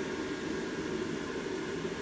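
Blower fan of a Gemmy airblown inflatable running steadily, a high-pitched whir over an even rush of air. The pitch comes from the fan working against back-pressure once the figure is fully inflated, with little airflow getting through.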